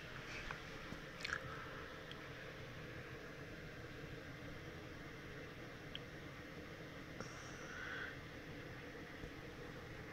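Quiet room tone, a steady faint hum and hiss, with a few small clicks and a soft rustle scattered through it.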